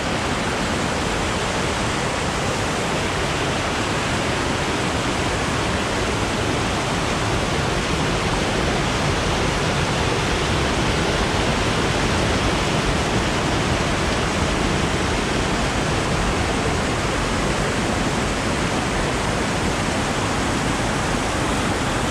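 A swollen, fast-flowing rocky stream rushing and churning over boulders, a loud, steady rush of white water with no breaks.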